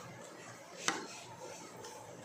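A tarot card being laid down on a table: one sharp tap a little under a second in, over faint room noise.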